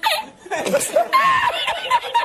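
A man laughing hard in high-pitched, breathless fits, his laughter broken up with half-spoken sounds.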